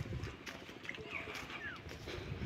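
Outdoor background noise with a few short, falling, high chirps a second or so in and again near the end, and some light clicks.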